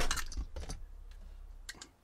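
Small plastic 12-volt panel parts (USB charger socket and switch) being handled and fitted by hand: a quick cluster of light clicks and taps, then two more clicks near the end.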